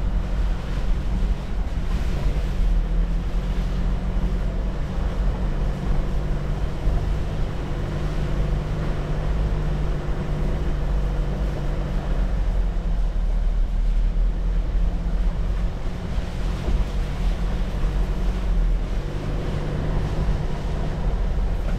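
A car driving slowly along a rough dirt track: steady engine hum under a continuous low rumble from the tyres on the gravel.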